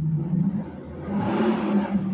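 A car engine running close by, a steady low hum that grows louder for a moment around the middle.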